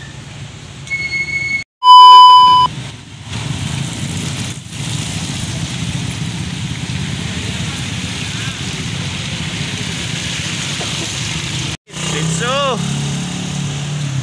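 Steady low rumble of vehicle engines in slow traffic on a wet road, with a loud short beep about two seconds in.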